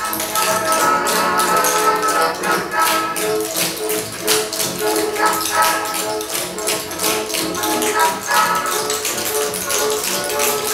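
Lively music playing for a dance routine, with rapid, sharp taps from tap shoes over it.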